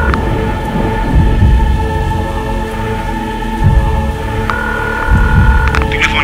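Rolling thunder and rain under held synth chords in a symphonic metal track, the thunder swelling several times. A higher sustained note joins near the end.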